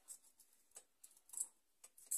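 Near silence with a few faint, short clicks and taps of kitchen items being handled on a worktop.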